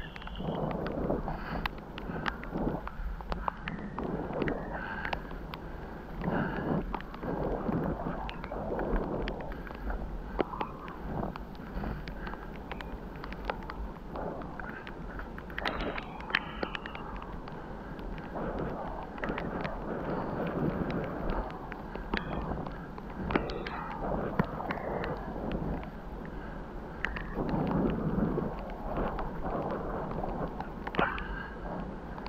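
Bicycle riding along a path covered in wet fallen leaves: steady wind noise on the microphone and tyre rumble over the leaves, with frequent small clicks and knocks from bumps. It gets louder for a couple of seconds near the end.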